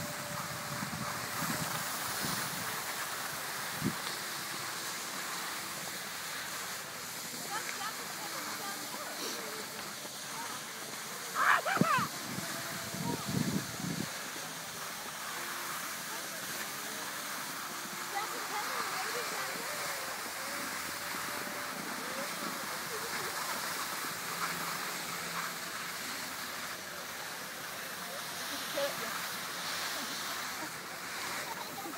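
Steady hiss of skiing over snow, with faint voices of other people on the slope. A short, louder burst of sound comes about twelve seconds in.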